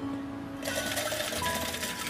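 Arcade game tokens pouring out of a token-exchange machine in a rapid metallic clatter, starting about half a second in, over soft background music.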